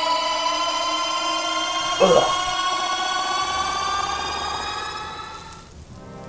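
A sustained electronic tone with many overtones, rising slowly in pitch and fading out near the end, with a brief falling sweep about two seconds in.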